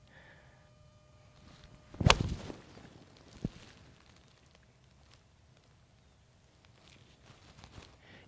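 TaylorMade P7MC iron striking a golf ball off the fairway: one sharp, crisp impact about two seconds in, followed by a much fainter tick about a second later.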